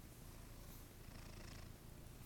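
A tabby cat purring, a faint, steady low rumble.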